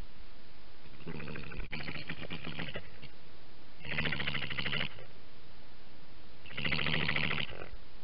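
European badger giving a rapid, throbbing purr-like call three times, each lasting one to two seconds.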